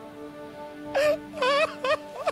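A woman's high, wavering wailing cry, in three loud sobs starting about a second in, over slow, sad background music with long held notes.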